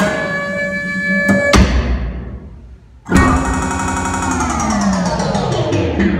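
Live contemporary music for baritone saxophone, percussion and electronics: sudden loud attacks that hold steady tones and then die away, and about three seconds in a loud sustained chord whose pitches slide slowly downward.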